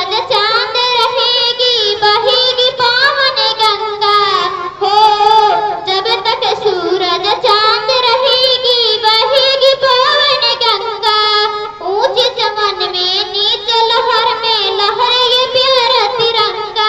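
A young girl singing a patriotic song solo into a handheld microphone, with no instruments, in long wavering held notes and brief breaths between phrases.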